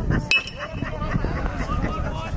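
A BBCOR baseball bat hitting a pitched ball: one sharp ping with a brief ringing tone about a third of a second in, with voices of people at the field around it.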